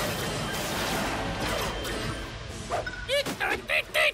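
Animated battle soundtrack: a dense mix of crashing effects over music, then from near three seconds a run of short, high, warbling cartoon-creature voice calls.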